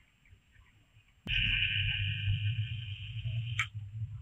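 Camera zoom motor whirring: a click, then a steady mechanical whir with a low hum for about two and a half seconds, cut off by another click.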